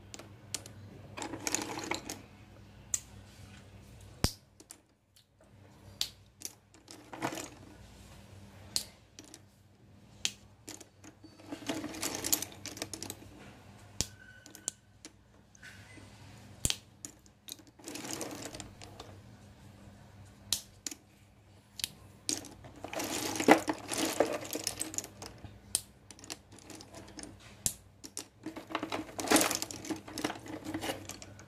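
Slate pencils clicking and clattering against one another as a hand picks through a cardboard box full of them: scattered single light clicks, with a denser rattling burst every few seconds when the pile is stirred.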